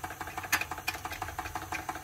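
Wilesco D305 model steam engine running slowly on compressed air instead of steam, with a light, even ticking about six times a second.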